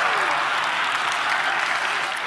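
A large theatre audience applauding steadily, with the tail of a laugh dying away at the start.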